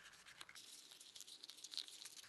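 Faint crinkling and rustling of a thick folded paper model being pressed and pinched into shape by hand, in scattered small crackles.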